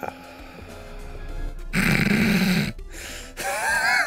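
Film soundtrack: music under the scene, with a loud noisy sound effect lasting about a second around the middle, then wavering high tones near the end.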